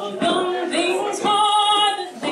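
A woman singing a traditional ballad solo, holding one long note from a little past halfway until near the end.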